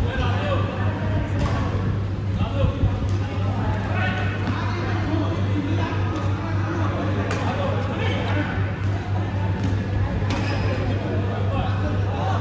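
Voices talking in a badminton hall over a steady low hum, with a few sharp clicks of badminton rackets striking the shuttlecock.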